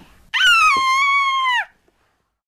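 A young child's long, high-pitched squeal, held steady for a little over a second and dropping in pitch as it ends.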